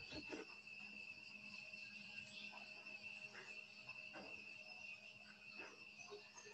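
Near silence: a faint, steady high-pitched insect trill in the background, with a few soft rustles.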